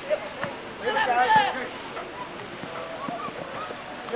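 Spectators' voices near the microphone, loudest about a second in and fainter near the end, over light wind and handling noise.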